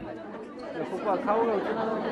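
Indistinct chatter of several voices in a room, adults' and children's, with high-pitched voices picking up about a second in.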